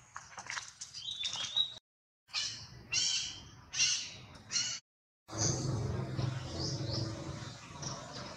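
Short high-pitched chirps and squeals with scattered clicks, cut off twice by brief dead silences, then a steadier low background with a few faint high chirps.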